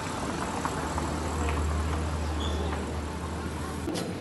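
A motor vehicle's engine running with a low, steady rumble close by over general street noise, loudest in the middle and easing off toward the end.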